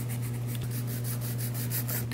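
A nail file rasping against the side of a hardened dip powder nail in quick, even back-and-forth strokes, several a second, to shape it. A steady low hum runs underneath.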